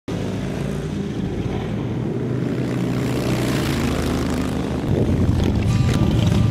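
Motorcycle engines running together in a low, steady rumble that grows louder near the end as the bikes approach.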